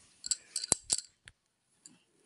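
A quick run of sharp clicks and knocks in the first second or so, two of them louder than the rest, then quiet.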